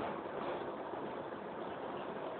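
Steady background hiss with no distinct card-handling clicks or other events.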